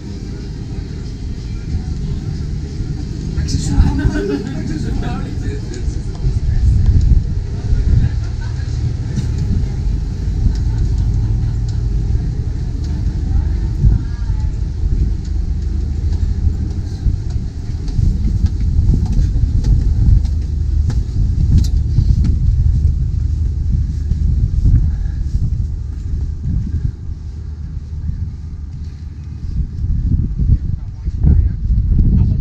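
Wind buffeting the microphone: a loud, uneven low rumble throughout, with brief muffled voices about four seconds in.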